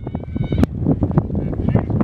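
A high-pitched voice calling out briefly, over steady wind rumble on the microphone and short knocks from handling the phone.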